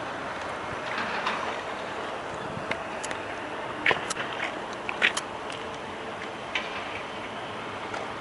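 Steady outdoor background noise with a few short, sharp clicks, mostly between about three and five seconds in.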